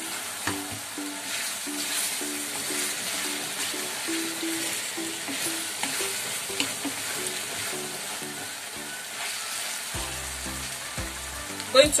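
Diced vegetables sizzling as they fry in oil in a pan, stirred with a spoon, under background music with a repeating note pattern.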